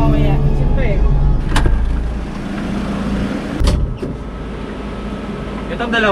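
A van being driven, its engine and road noise heard as a steady low rumble from inside the cab, with background music fading out in the first second or so. Two sharp knocks come about a second and a half in and again near the middle.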